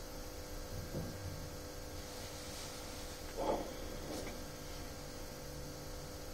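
Steady electrical hum and faint hiss of a telephone line, with two brief faint indistinct sounds about a second in and three and a half seconds in.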